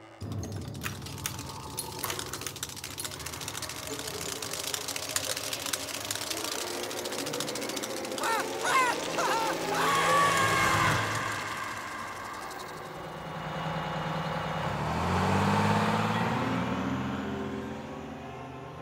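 Cartoon soundtrack of music and sound effects. Near the end a bus engine rises steadily in pitch as the bus pulls away.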